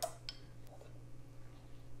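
A knife and lime knocking lightly on a plastic cutting board: one sharp click, then a couple of faint ticks. After that, quiet room tone with a low steady hum.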